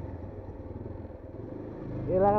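Motorcycle engine running steadily at low speed while the bike is ridden, a low rumble without sharp events.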